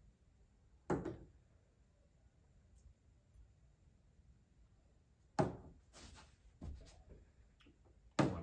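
Mostly quiet room with a few brief knocks: one about a second in, another at about five and a half seconds and a softer one near seven seconds, as glass tasting glasses are handled and set down on the tabletop.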